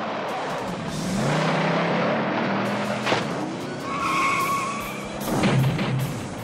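Cartoon sound effect of a van's engine revving and its tyres spinning and skidding as it peels away, with a tyre squeal about four seconds in.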